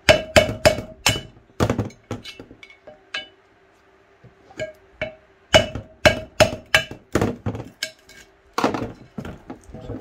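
Flat-blade screwdriver tapping and prying neodymium magnets off the inside of a steel motor rotor ring: a run of sharp metallic clicks and clinks as the magnets come away and snap onto one another, a pause of about a second and a half, then another run.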